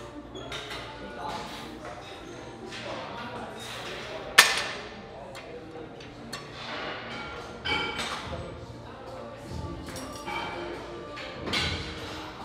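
Gym weights clanking: scattered metal knocks, the loudest a sharp ringing clank about four seconds in, with further knocks near eight seconds and near the end. Background music plays underneath.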